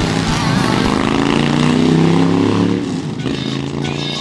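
A motorcycle engine revving up, its pitch climbing over the first two seconds and then holding steady. Music with a beat comes in near the end.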